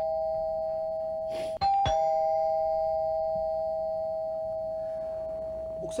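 Doorbell sound effect: a two-note ding-dong, a higher note then a lower one, about a second and a half in, the lower note ringing on and slowly fading.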